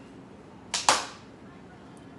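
A sharp double clack about a second in: two quick hits close together, with a short tail.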